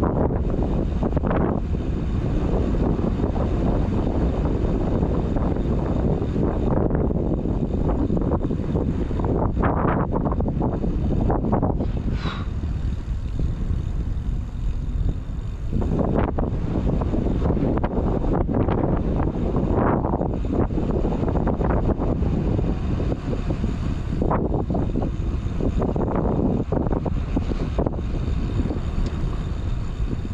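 Wind rushing over the microphone and tyre rumble on asphalt as an e-mountain bike rolls along, steady throughout, with a brief squeak about twelve seconds in.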